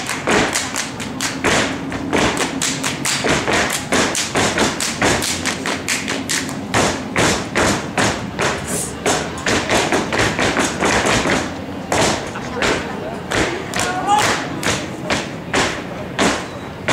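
Step team stepping in unison: rapid, rhythmic stomps on the stage floor mixed with hand claps, in a fast, syncopated pattern of sharp hits several times a second.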